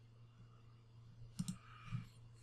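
A quick pair of computer mouse clicks about one and a half seconds in, with another click at the very end, over a faint low steady hum.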